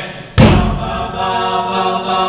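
Several voices singing sustained close harmony in a live pop-rock song, with a loud drum hit about a third of a second in as the band comes in under the singing.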